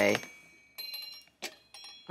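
A voice trails off, then a faint, high bell-like ringing from a baby's toy lingers, with a couple of light clicks.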